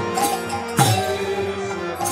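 Kirtan music: a harmonium holding steady reed notes over mridanga drums. A deep bass stroke on the mridanga lands near the start and again about a second in, each sliding down in pitch, with crisp higher drum strokes between.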